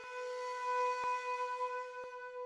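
Background music: a flute-like wind instrument holding one long, steady note. Two faint clicks, one at the start and one about a second in.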